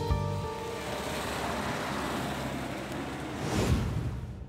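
A rushing whoosh that swells to a peak near the end, the sound-design sweep into a scene transition. A held music chord fades out in the first half second.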